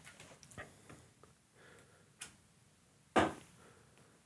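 Mostly quiet, with a few faint scattered clicks from an electric guitar being handled, and a short rustle about three seconds in.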